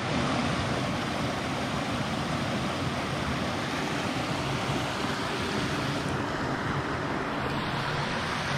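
Small creek waterfall: water rushing steadily over a short rock cascade into a clear, shallow stream.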